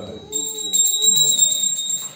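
A loud, high-pitched steady ringing tone that starts about a third of a second in and cuts off suddenly at the end, with low voices underneath.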